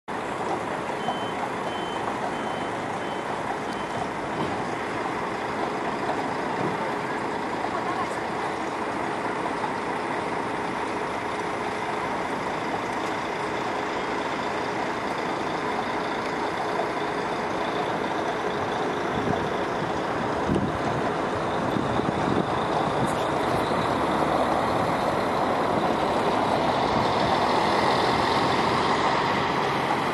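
Busy city-square street noise: a steady wash of traffic and engine sound that grows louder over the last ten seconds. A vehicle's reversing alarm gives about six short high beeps in the first few seconds.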